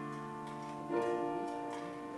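Keyboard instrument playing slow, held chords, moving to a new chord about a second in, with a few faint light clicks over the music.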